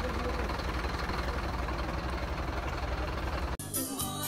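A vehicle engine running steadily close by, a low pulsing rumble, with faint voices behind it; it cuts off suddenly near the end as music comes in.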